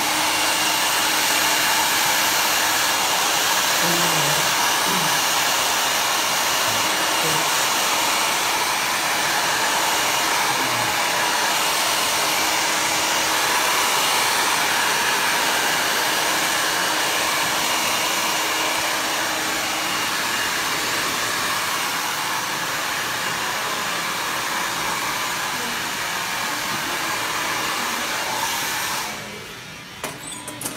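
Hand-held hair dryer blowing steadily while hair set with sea salt spray is blow-dried for volume and texture. It switches on at the start and cuts off about a second before the end.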